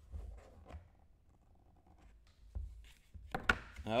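Quiet handling of a cardboard trading-card box as its lid is lifted off a foam insert: soft rubbing and light knocks, with a sharper knock about three and a half seconds in.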